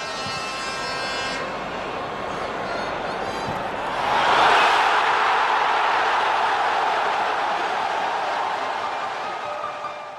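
Stadium crowd noise that swells into a loud cheer about four seconds in, the roar for a goal being scored, and then slowly eases off. A steady pitched tone sounds over the crowd in the first second or so.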